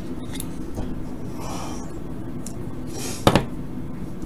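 A small metal hand tool handled on the workbench: a brief scraping rub about a second and a half in, then one sharp metallic click a little after three seconds.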